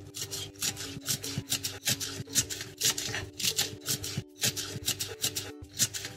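Knife chopping mint leaves on a wooden cutting board in quick, even strokes, about four to five a second, over soft background music.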